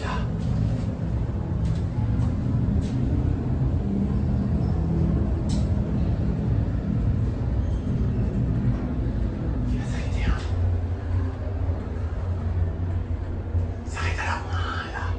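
Edelma traction elevator car travelling between floors, with a steady low hum and rumble of the ride; the low hum changes a little after ten seconds in.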